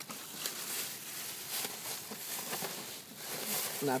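Plastic trash bags rustling and crinkling as gloved hands dig through garbage inside them.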